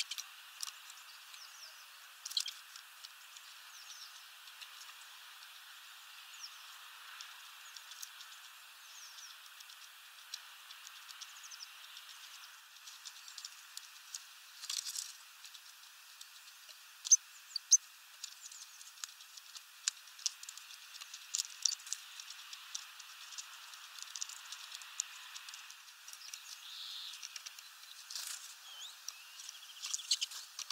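Small birds pecking at sunflower seeds on a feeder tray: scattered sharp clicks and ticks of beaks on seed husks and wood, some louder than others, over a steady faint hiss, with a few faint high chirps.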